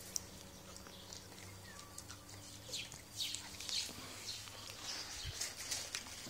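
A dog taking a piece of dried date from a hand and eating it: faint, irregular chewing and mouth sounds, clustered around the middle, over a low steady hum.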